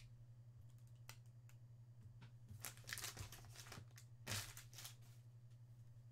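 Faint crinkles and rustles of a torn foil trading-card pack wrapper and the cards inside being handled, a few slightly louder between about two and a half and four and a half seconds in, over a low steady hum.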